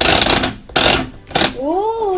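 Plastic knob of a toy coin-operated candy machine being turned, the dispensing mechanism clattering in three loud bursts as it releases candy after a coin is put in. A girl's rising "ooh" follows near the end.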